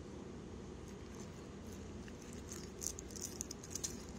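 Faint handling of the clear plastic bag wrapped around a new piston: a few small crinkles and crackles in the second half, over a low steady room hum.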